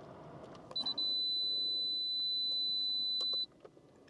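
A single steady, high-pitched electronic beep held for about two and a half seconds, then cut off abruptly, with a few faint clicks around it.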